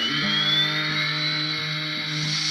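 Guitar music with a steady chord accompaniment, and over it the electric motor of a model Shay locomotive whining as it speeds up, rising in pitch and then holding steady.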